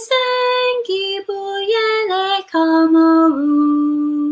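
A woman singing solo, a line of a choir song in Zulu, in a run of held notes stepping downward. About three seconds in she slides down onto a long, low held note.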